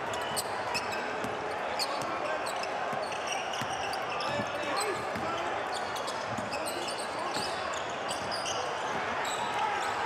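A basketball being dribbled on a hardwood court, with sneakers squeaking in short chirps and players' voices.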